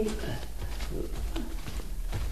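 Faint cooing of a dove over a steady low hum from the old recording.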